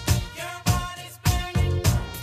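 Instrumental stretch of a reggae-pop dance song: a steady beat about every 0.6 s with sustained pitched parts, no vocals.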